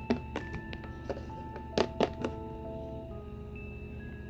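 Small plastic Littlest Pet Shop figures knocking and tapping on a hard surface as they are moved by hand: a run of light clicks and thunks, two louder knocks about two seconds in. Soft background music with held notes runs underneath.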